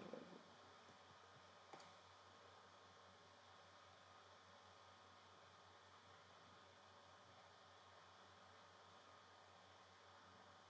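Near silence: faint room tone with a steady low hum and hiss, and one faint click a little under two seconds in.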